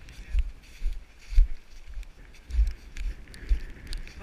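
Footsteps over rock and snow heard through a body-worn camera, with dull low thumps about once a second and scattered clicks, mixed with wind buffeting the microphone.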